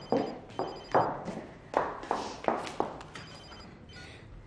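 A telephone ringing with a high electronic trill in short bursts, over sharp thuds about twice a second.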